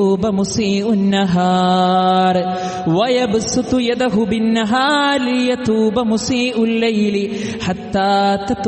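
A man's voice chanting Arabic melodically, holding long steady notes and sliding in pitch between phrases.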